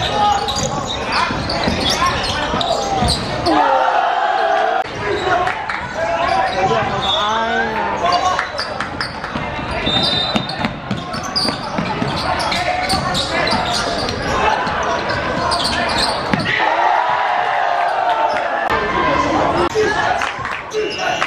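Basketball game in an echoing sports hall: a ball bouncing repeatedly on the court floor while players and spectators shout and call out.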